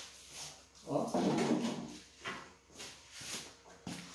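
A cloth rag wiped over tiled flooring in several quick swishing strokes, coming faster in the second half.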